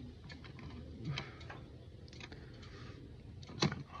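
Small metal clicks and taps of hardware being fitted by hand onto the terminal studs of a car-audio fuse block, with one sharper click near the end.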